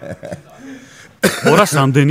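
Men's voices in conversation, starting again after a short lull about a second in.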